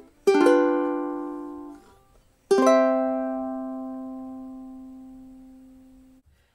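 Solid koa Takumi ukulele strummed: one chord that is damped after about a second and a half, then a final chord about two and a half seconds in that is left to ring and fades away.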